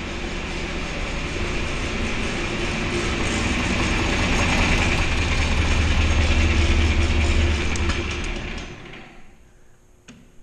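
John Deere 4020 tractor engine running with a steady mechanical clatter and low rumble, growing somewhat louder over the first seven seconds, then winding down and stopping about nine seconds in.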